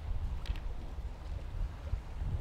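Steady low rumbling background noise, with a couple of faint short clicks as pieces of dry biscuit are handled.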